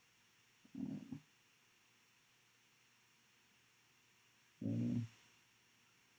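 Two brief, low, wordless hums or grunts from a man's voice, one about a second in and one near the end, with silence between them.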